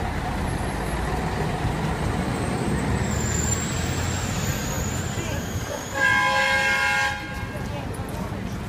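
A vehicle horn sounds one steady blast of a little over a second, about six seconds in, over street traffic noise.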